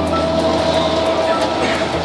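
A metal roller shutter rolling up over a shop front, its slats rattling continuously over a steady hum.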